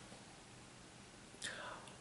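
Near silence with faint room tone, then a short, soft breath in about one and a half seconds in.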